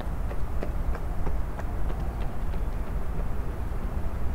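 Runners' footsteps passing, light taps a few times a second, over a steady low rumble.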